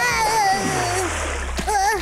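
Cartoon splash of a character dropping into a swimming pool, with a long cry over it that sinks slightly in pitch.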